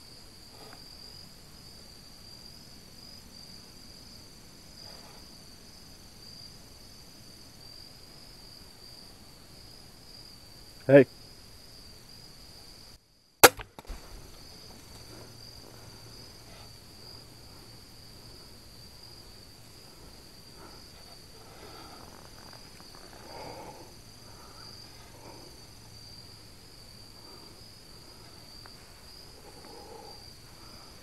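A single crossbow shot: a sharp crack, followed by a couple of lighter knocks, about two seconds after a loud shout of "Hey". Crickets chirp steadily throughout.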